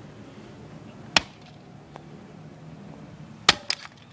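Sledgehammer blows smashing a plastic CD and its case on the grass: a sharp crack about a second in, then another crack followed closely by a smaller one near the end.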